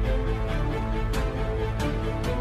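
Background music: sustained pitched notes over a strong, steady bass, with occasional drum hits.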